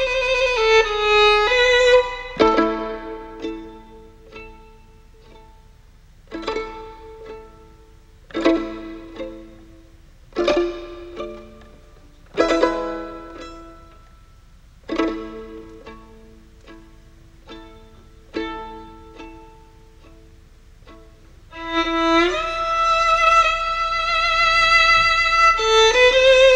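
Solo violin: a few bowed notes with vibrato, then a slow run of plucked pizzicato chords, each struck sharply and fading away, about two seconds apart. Bowed playing with vibrato returns near the end.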